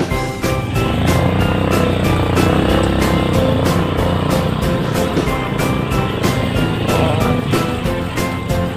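Honda CRF150 trail bike's single-cylinder four-stroke engine running steadily while being ridden on a muddy dirt road, under background music with a melody of held notes.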